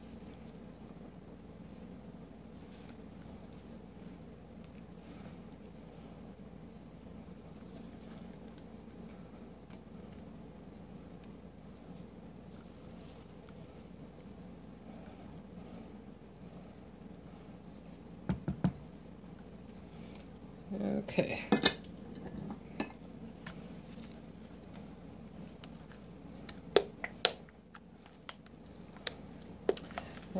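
Spatula and scoop scraping thick soap batter around a plastic mixing bowl, faint for most of the time, with a few sharp clicks and knocks of the utensils against the bowl in the second half.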